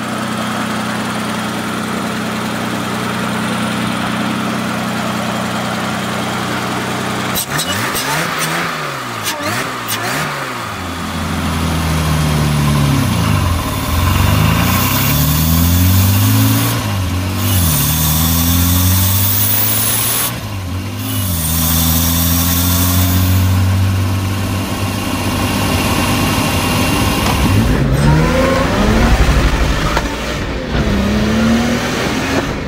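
Supercharged BMW M20 inline-six engine, fitted with an Eaton M90 roots supercharger, idling steadily for about seven seconds and then revved up and down repeatedly, each rev rising and falling back.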